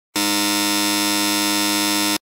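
A steady electronic buzzer tone of one unchanging pitch, rich in overtones, starting abruptly just after the start and holding level.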